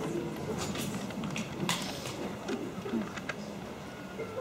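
Quiet pause in an auditorium: scattered small clicks and knocks with a faint low murmur. No music is playing.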